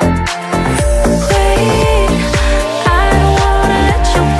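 Bass-heavy slap house music: a steady kick-drum beat over a deep pulsing bassline, with a gliding lead melody. The level dips briefly near the start, then the full beat comes back in.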